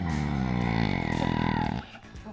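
A low, buzzy drone with many overtones that holds steady for nearly two seconds and then cuts off suddenly.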